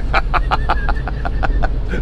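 A man laughing in quick, breathy pulses, about six a second, over the steady low rumble of a van's engine and tyres heard from inside the cabin.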